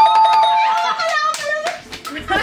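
A single sharp hand slap at the start, then a girl's high held squeal lasting about a second, followed by excited children's voices.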